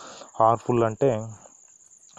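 A man's voice speaks a few words, then pauses. Under it a steady, high-pitched pulsing trill runs the whole time.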